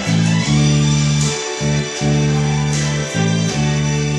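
Four-string electric bass plucked with the fingers, playing long held notes with short breaks between them, over a recorded band backing track with guitar.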